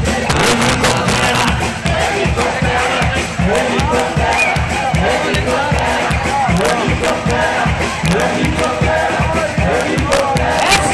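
Live salegy dance music played loud through a PA, with a fast, steady beat and voices over it, and the crowd shouting and cheering along.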